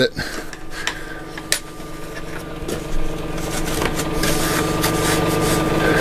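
A steady, low-pitched machine hum that slowly grows louder, with two light knocks about one and one and a half seconds in.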